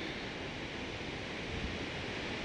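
Steady rushing noise of Shoshone Falls, a large waterfall, with an uneven low rumble of wind on the microphone.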